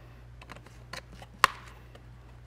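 A few light clicks and one sharp tap, about one and a half seconds in, from the plastic transmission-fluid bottle being handled and lifted away from the glass jar after pouring.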